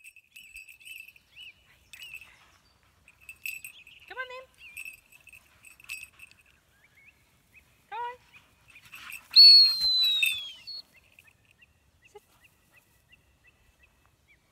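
A single loud whistle falling in pitch over about a second, a little past halfway, over birds chirping steadily; two short rising calls come earlier.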